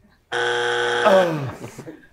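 Game-show buzzer sounding once for about a second, a steady buzzing tone that starts abruptly, with a voice sliding down in pitch over its tail.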